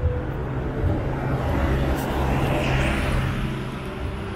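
Road traffic going by close at hand: a steady low rumble of vehicles on the road, with one vehicle swelling louder as it passes between about two and three and a half seconds in.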